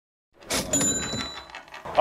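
Cash register 'ka-ching' sound effect: a sudden metallic clatter about half a second in, with a high ringing chime that fades over about a second.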